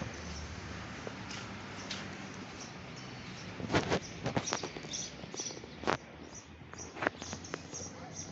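Small birds chirping in quick short calls, thickening from about halfway through, with a few sharp clicks among them. A low steady hum fades out in the first few seconds.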